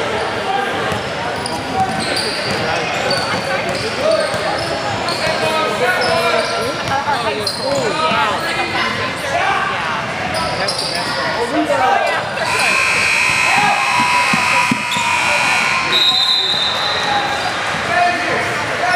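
Basketball game in a large gym: the ball bouncing on the hardwood court among the overlapping voices of players and spectators, all echoing through the hall. Held high-pitched tones sound for a couple of seconds past the middle and again briefly near the end.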